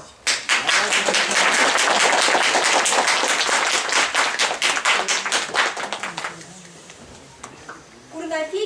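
A small audience applauding by hand-clapping, starting just as a piano piece ends, lasting about six seconds and then dying away to a few last claps.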